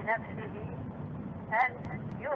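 A man's voice speaking a few brief words, at the very start and again near the end, over a steady low background hum of the recording.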